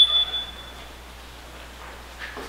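A single high electronic beep, one steady tone fading out within the first second, like a home alarm system's door chime as the back door opens. After it only a faint steady hiss of outside air.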